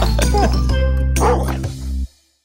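Background music with a held low chord, over which a cartoon puppy gives a few short barks; the music stops abruptly at the end.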